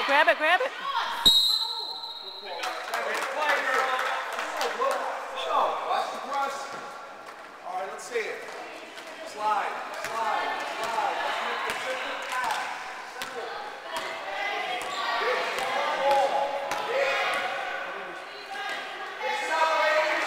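A basketball being dribbled and bouncing on an indoor gym court during a game, with shouting players and spectators echoing around the hall. A short whistle blast sounds about a second in.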